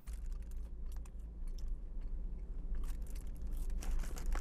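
A person chewing French fries: irregular small crackly clicks from the mouth over a steady low hum.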